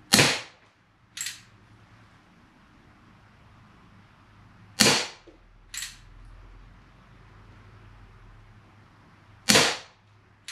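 Crosman 1875 Remington CO2 BB revolver firing three shots, a sharp crack about every four and a half seconds, each followed about a second later by a fainter click.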